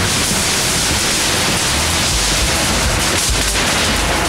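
Off-road buggy driving over and flattening thin sheet-metal sheds, the walls crumpling under it: a loud, dense, steady crunching roar with no clear breaks.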